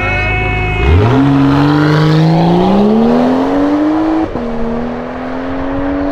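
BMW E92 coupe accelerating hard away from a standstill: the engine note climbs steadily for about three seconds, drops sharply at a gear change about four seconds in, then climbs again in the next gear.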